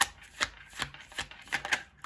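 A tarot deck being shuffled by hand: a series of sharp card snaps, about two or three a second.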